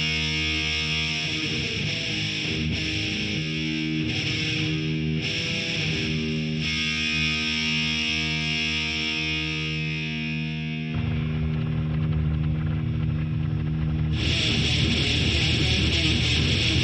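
Instrumental intro of an AI-generated thrash metal song: distorted electric guitar holding sustained chords. The low end changes about eleven seconds in, and the sound turns fuller and brighter about two seconds before the end.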